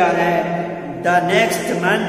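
Speech only: a man reciting a sentence slowly, with long drawn-out syllables.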